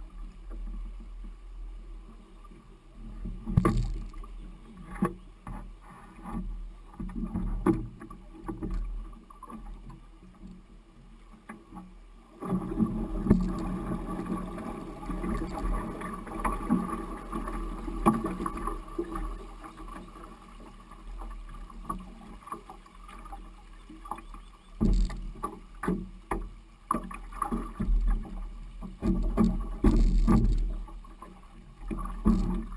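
A canoe's hull knocking and scraping over river stones in shallow water, with water moving around it. The knocks come scattered and irregular, with a denser, steadier stretch of scraping in the middle.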